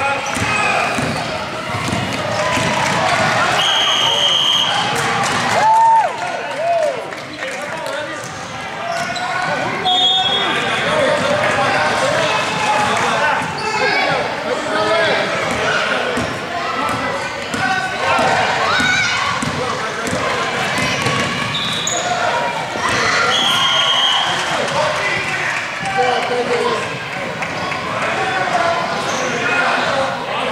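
Basketball game in a gym: a ball dribbled on the hardwood court amid echoing voices of spectators and players. Three short high steady tones sound about 4, 10 and 24 seconds in.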